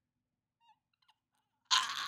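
Near silence, then near the end a short, breathy, unvoiced laugh from a man.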